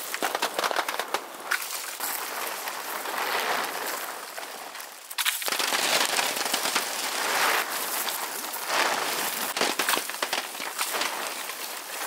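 Medlar fruits and bits of twig raining down onto a plastic tarp as the tree is shaken with a pole: a dense crackling patter of many small hits. It eases briefly and starts again sharply about five seconds in.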